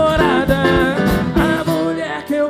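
Live band music: electric guitars over bass and drums with a sung vocal line, in a country-rock style.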